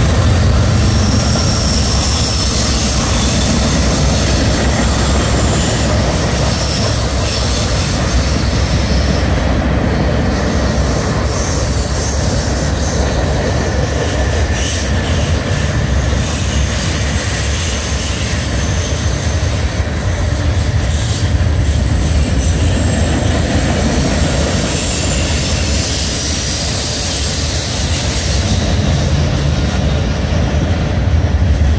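CSX freight train cars (tank cars, boxcars and gondolas) rolling past at close range on two tracks: a steady loud rumble of steel wheels on rail, with faint high wheel squeal at times.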